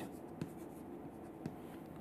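Faint scratching of chalk on a chalkboard as a word is written, with a couple of light ticks.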